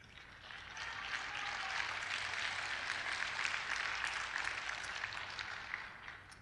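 Congregation applauding: dense clapping that swells over the first second, holds steady, and dies away near the end.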